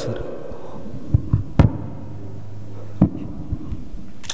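A few short, low thumps and knocks on a microphone, about four in the first half and one near the end, with a steady low electrical hum in between.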